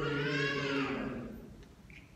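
A man's drawn-out voice over a microphone, its pitch rising and then falling for about a second before fading away.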